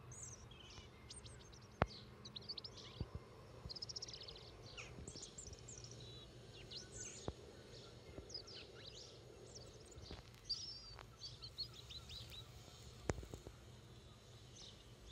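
Small songbirds chirping and singing in short, high phrases, faint over a low background hum, with several sharp clicks.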